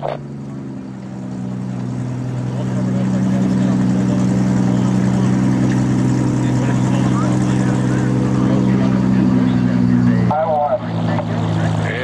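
A car engine runs at a steady speed with a low, even note that gets louder and rises slightly over the first few seconds. Near the end a voice comes over a public-address speaker.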